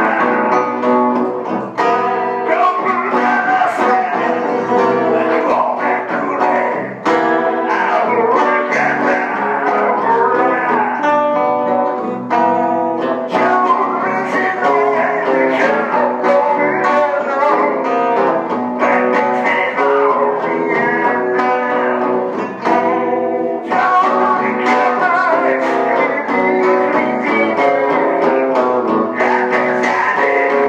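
Live music: a guitar played with a man singing, continuous and loud.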